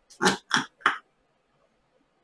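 A woman laughing in three quick bursts within the first second, then falling quiet.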